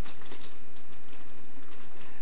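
Steady background hiss with a few faint clicks in the first half-second.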